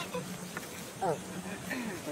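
A flying insect buzzing steadily and low, with a woman's short "eh" about a second in.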